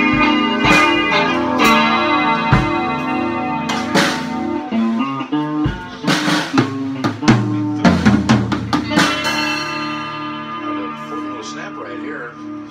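Electric guitar and drum kit playing live together: sustained guitar chords over drum hits, a dense burst of drum and cymbal strikes about two-thirds of the way through, then the playing thins out and the guitar rings and fades.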